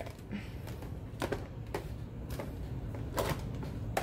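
Cooked snow crab legs clicking against each other and a plastic bowl as they are shuffled by hand, a handful of separate clicks over a low hum.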